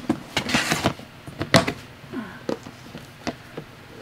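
Plastic reptile tubs being handled: scattered knocks, clatters and short scrapes as a tub is moved and opened, the loudest knock about one and a half seconds in.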